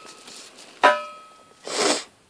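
Metal wire cage bars struck once and ringing, the metallic tone dying away over about half a second. A short breathy huff follows near the end.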